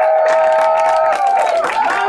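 Small live audience clapping and cheering loudly, with shouts held over the applause.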